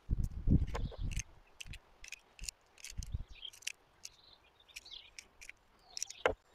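A few dull low thumps in the first second, then scattered light clicks as .22 cartridges are handled and pressed one by one into a Walther P22 pistol magazine.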